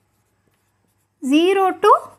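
Faint strokes of a marker pen writing on a whiteboard over a low steady hum. A woman starts speaking a little past halfway.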